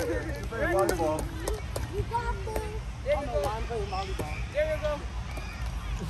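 People's voices calling and chattering during an outdoor ball game, in scattered short bursts, over a steady low rumble.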